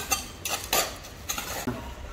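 Hands scooping and scraping loose, dry soil around a sapling being planted, a run of short irregular scrapes and crumbles.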